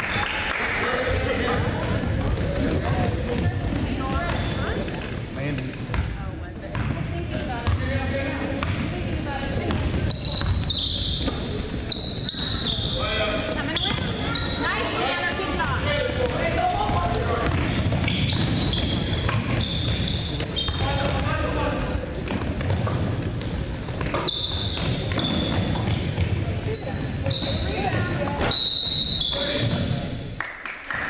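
A basketball being dribbled on a hardwood gym floor, with sneakers squeaking in many short high chirps as players run and cut, over a steady hubbub of voices in the gym.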